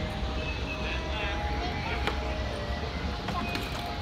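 Background ambience of a busy play area: faint distant voices over a steady low hum, with a single sharp click about two seconds in.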